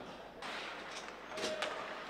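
Faint ice rink ambience: a steady hiss of skates on the ice, with a single brief click about a second and a half in.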